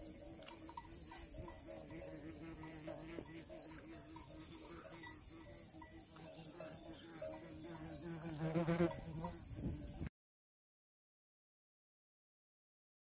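Sheep flock grazing in the open, with a steady high chirr of insects throughout; a sheep bleats loudly with a wavering voice near the end, then the sound cuts off abruptly about ten seconds in.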